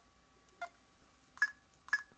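Computer mouse clicking three times, a little under a second apart, as points are placed on screen to cut a hole in an embroidery shape.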